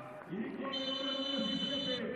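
Broadcast transition stinger: a steady high electronic tone sets in a little way in, over faint low voices.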